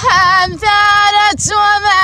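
A woman singing tamawayt, the unaccompanied Amazigh sung poetry of the Atlas, in a high voice: long held notes joined by quick ornamented turns, with short breaks between phrases.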